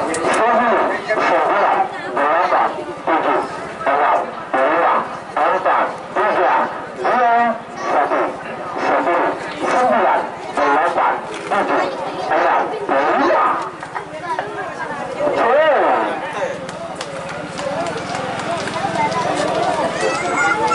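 A man's voice talking or calling in quick, evenly paced phrases, thinning out about fourteen seconds in.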